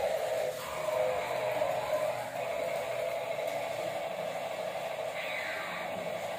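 Small battery-powered toy cars running along a plastic track: a steady whir of little electric motors.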